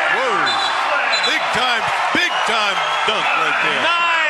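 Basketball arena crowd cheering for a fast-break dunk, with a TV play-by-play announcer's raised voice running over it.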